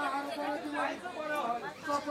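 Speech: a voice talking, with chatter around it.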